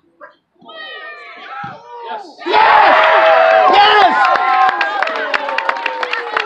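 Sideline spectators shouting and cheering a goal, breaking out suddenly and loudly about two and a half seconds in after a few rising excited calls, with scattered clapping.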